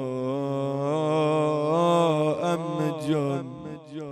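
A man's voice chanting a Shia mourning elegy (noha), holding long, wavering melismatic notes that fade out about three and a half seconds in.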